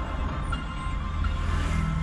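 Background music, with a motorcycle passing close in front whose noise swells near the end.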